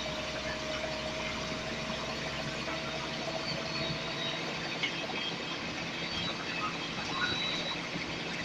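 Interior sound of a Scania L94UB single-deck bus, heard from the passenger saloon as a steady drone of the engine and running gear. A faint whine runs with it and fades out a little past halfway.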